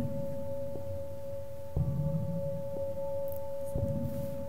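A steady, unwavering tone, with a fainter higher tone held above it, and faint ticks about once a second.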